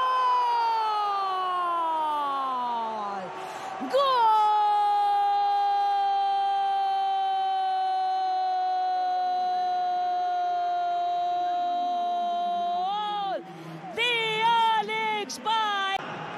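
Football commentator's drawn-out goal cry: a shout that falls in pitch over about three seconds, then one long 'gooool' held on a single note for about nine seconds, ending with a brief rise and break. Quick excited shouts follow near the end.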